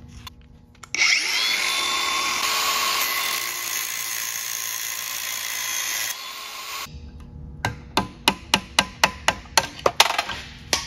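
Angle grinder with a cut-off wheel spinning up and cutting through the steel outer ring of a control-arm bushing for about five seconds, a loud grinding with a whine, then winding down. Near the end comes a rapid run of sharp metal strikes, about three or four a second, as the cut ring is knocked loose.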